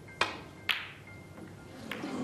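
Snooker balls clicking during a shot: the cue tip strikes the cue ball, about half a second later the cue ball hits an object ball with a louder, ringing click, and a third click comes near the end as a ball strikes another ball or a cushion. Soft background music plays underneath.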